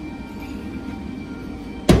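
A single loud metallic clunk near the end as the ring roller's heavy tilting head is pushed back upright and comes to rest, over steady background music.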